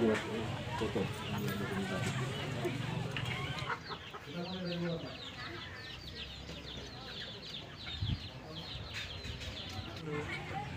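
Crowd voices chattering for the first few seconds, then a run of quick high bird chirps, several a second, with a single knock about eight seconds in.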